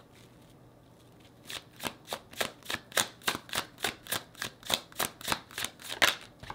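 Tarot cards being shuffled by hand: after a short quiet, a quick, even run of card slaps, several a second, starting about a second and a half in.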